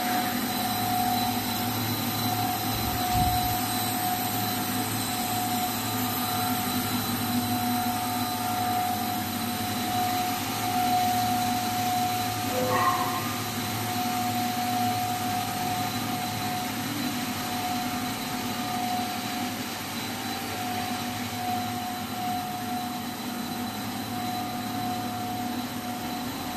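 HDPE/LDPE plastic pipe extrusion line running: a steady machine hum from its motors and pumps, with a steady mid-pitched whine over it.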